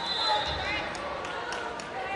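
Spectators and players calling out and chattering in a large gym, with several sharp knocks of a volleyball bounced on the hardwood floor before the serve.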